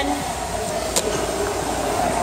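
A barbell pulled from the floor and caught at the shoulders in a clean, giving one sharp clack about a second in, over a steady low room rumble.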